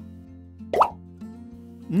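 A short cartoon 'bloop' sound effect, one quick upward glide in pitch about three quarters of a second in, as the wooden ant puzzle piece drops into its slot. Soft background music plays throughout.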